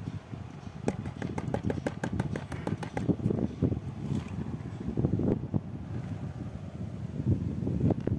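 Water swishing and sloshing in a plastic gold pan as a black-sand concentrate is panned by hand. A quick run of small clicks comes about one to three seconds in.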